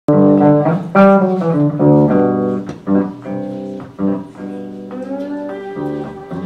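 Lap steel guitar and electric bass playing an instrumental tune together, a quick run of plucked notes; about five seconds in, the slide glides up into a held note.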